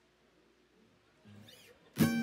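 Near silence between songs, with a faint, brief murmur in the second half, then an acoustic guitar strummed once, loudly, right at the end.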